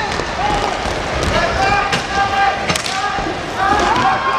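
Inline hockey play in an arena: voices shouting and calling across the rink, with sharp clacks of sticks and puck hitting the rink floor.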